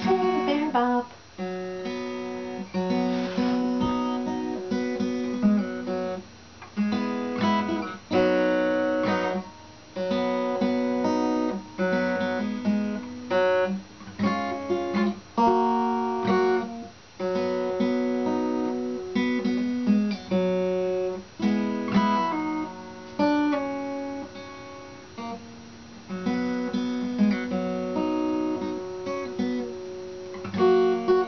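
Steel-string acoustic guitar played solo in an instrumental break between verses: strummed chords struck in a steady rhythm, each left ringing before the next stroke.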